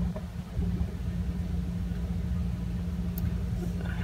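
Steady low hum with a rumble underneath.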